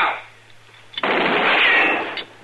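A single gunshot from a radio drama sound effect, sudden and loud about a second in, ringing on for about a second before it dies away.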